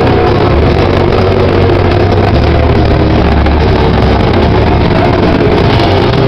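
A metallic crust punk band playing live and very loud: distorted electric guitars, bass and drums in one continuous, dense wall of sound, heaviest in the low end.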